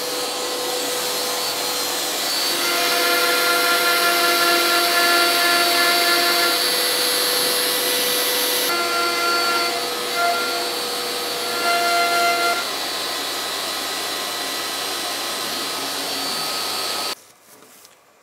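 CNC router (a DeWalt trim router on an X-Carve gantry) running at speed with its dust extraction, while a 90-degree V-bit carves lettering into a wooden nameplate blank. Steady tones rise out of the motor noise and drop away again as the bit moves in and out of the cut, and the sound cuts off suddenly near the end.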